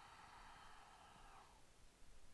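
Near silence, with a faint, soft breath, fading out near the end.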